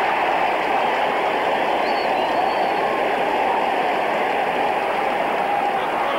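A large stadium crowd cheering a goal, a steady unbroken roar of many voices.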